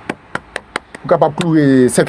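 About six light, sharp taps or clicks in quick succession during the first second, then a man speaking.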